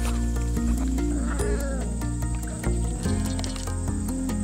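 Background music with held notes, over puppies' brief high whines and yips, the clearest about a second and a half in.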